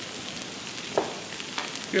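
Thin slices of unpeeled potato frying in olive oil on a teppanyaki griddle held at about 180 °C: a steady sizzle.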